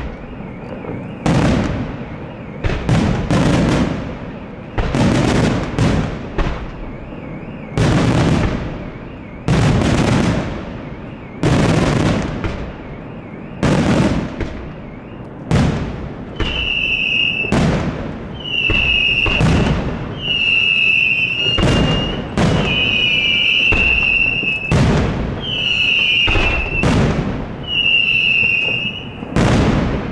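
Aerial firework shells bursting in a steady run, roughly one sharp bang a second, each followed by a rumbling tail. In the second half a high whistle of about a second joins each burst.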